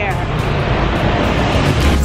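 Steady rushing noise of city street traffic.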